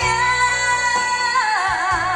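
Woman singing a Taiwanese Hokkien ballad into a microphone over amplified backing music, holding one long note that slides down about one and a half seconds in and then wavers with vibrato.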